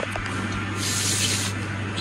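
A brief hiss lasting under a second, about a second in, over a steady low hum.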